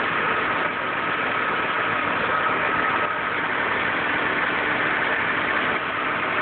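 Volvo 850's inline five-cylinder engine idling steadily, running on a freshly fitted timing belt with its belt pulleys spinning. A faint steady whine fades out about three seconds in.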